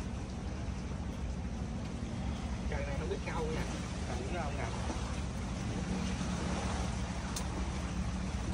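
A steady low engine rumble throughout, with faint voices in the background about three seconds in.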